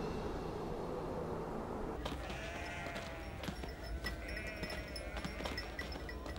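A flock of sheep and goats bleating, the calls starting about two seconds in and overlapping, with a few light knocks among them.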